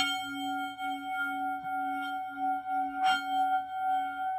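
A struck bell-like instrument ringing: a long, pulsing metallic tone, struck again about three seconds in.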